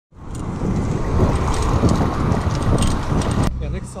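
Riding noise from a moving bicycle: wind buffeting the microphone with scattered light rattles. It cuts off suddenly about three and a half seconds in.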